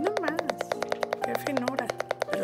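Kitchen knife slicing a cucumber paper-thin on a wooden cutting board: a fast, even run of knife taps, more than ten a second, with steady tones from background music and a woman's brief remark near the start.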